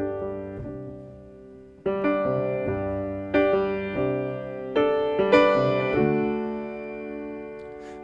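Solo piano playing a slow, quiet introduction to a ballad: sustained chords struck every second or two and left to ring out, fading near the end just before the vocal comes in.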